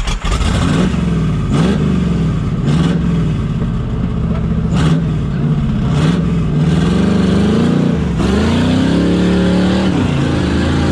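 TJ Jeep Wrangler's carbureted engine revving up and down in repeated surges under load as it crawls up a rocky ledge, with several brief sharp noises along the way; about eight seconds in the revs climb and stay high.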